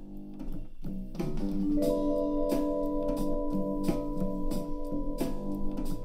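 Music with held chords and a steady beat, played through a DIY Bluetooth wall speaker made from ported laptop speakers and recorded live in the room. It starts thinly and fills out about a second in.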